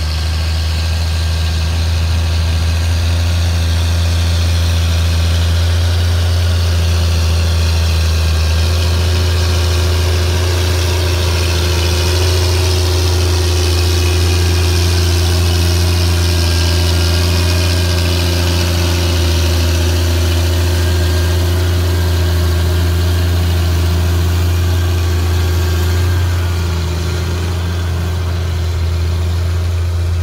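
Challenger MT765C rubber-tracked tractor's 360 hp diesel engine running steadily under heavy load while pulling a land leveller heaped with soil: a constant deep drone with a hiss above it, easing slightly near the end.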